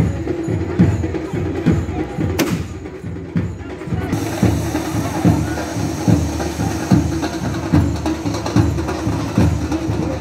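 Rhythmic drumming with a steady beat: heavy low strokes about every eight-tenths of a second, with lighter strokes between.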